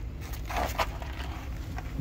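A few soft crunching footsteps on packed snow, over a low steady rumble.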